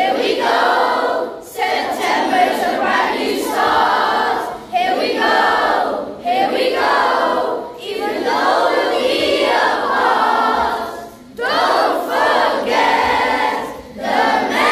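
A large group of children singing a song together as a choir, phrase by phrase with short breaks between phrases.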